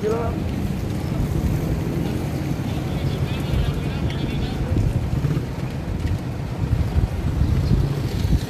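Wind buffeting the phone's microphone, a steady rough rumble, with faint voices of people in the background.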